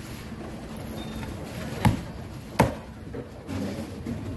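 Two sharp knife chops into a fish on a thick round wooden chopping block, about three-quarters of a second apart, over steady low background noise.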